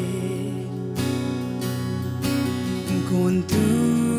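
Slow worship song: acoustic guitar strummed slowly, about one strum a second, with a woman singing softly.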